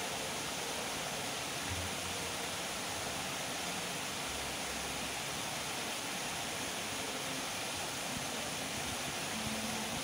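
Steady rushing of a small waterfall pouring into a pond, an even hiss of falling water.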